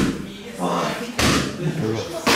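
Kicks smacking into a held kick shield pad: one sharp smack about a second in, after the tail of another at the start, with voices in between.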